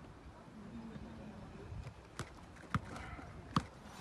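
A leather football being juggled with the feet: three sharp thuds of boot on ball in the second half, over a faint background.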